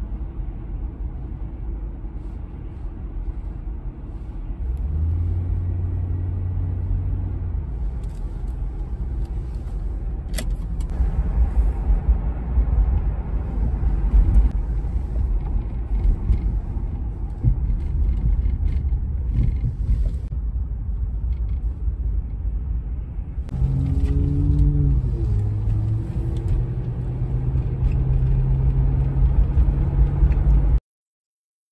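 Road and engine rumble inside a moving car, continuous and low. A sharp click comes about ten seconds in, and a humming tone that shifts in pitch joins near the end.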